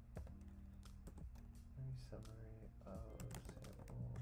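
Computer keyboard typing: a quick, irregular run of keystroke clicks, fairly quiet.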